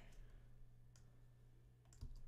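Near silence: room tone with a steady faint hum and two faint computer clicks, about a second in and near the end.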